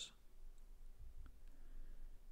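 Near silence: faint room tone in a pause of the voice recording, with a couple of tiny faint clicks.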